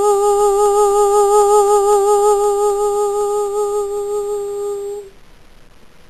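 A woman's voice, unaccompanied, holding one long final note of the song with a gentle vibrato; it tapers slightly and stops about five seconds in.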